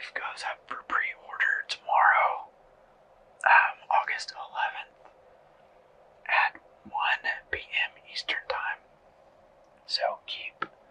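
A person whispering, in short phrases with pauses of a second or so between them.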